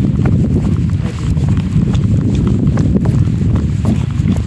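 Wind buffeting the phone's microphone, a loud low rumble, with light footsteps on a tarmac road walking downhill.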